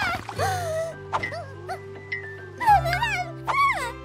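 High, squeaky wordless cartoon character vocalizations, several short cries that swoop up and down in pitch, over background music with steady low held notes.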